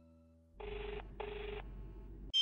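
Telephone ringback tone heard down the line: a double ring, two short bursts of tone in quick succession starting about half a second in, the sign that an outgoing call is ringing and not yet answered.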